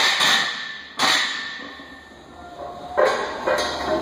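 Loaded barbell clanking against the steel power rack as it is racked after a squat set: sharp metal clanks that ring and die away, one at the start, one about a second in and another about three seconds in.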